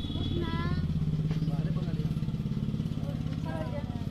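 A small engine running steadily nearby, a low, even, pulsing hum, with faint voices in the background.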